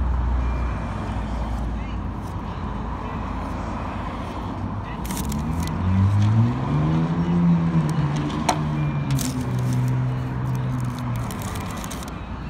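Road traffic going by: a low rumble at first, then about halfway through a vehicle's engine note climbs, peaks and settles as it accelerates past. A few short clicks come through.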